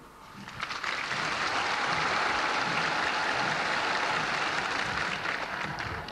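Crowd applauding, building up over the first second and then holding steady.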